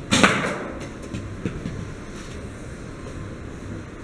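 An arrow striking a rolling disc target with one sharp thud, followed by a few lighter knocks within the next second or so.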